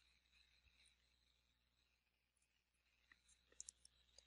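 Near silence: faint room tone, with a few light clicks near the end.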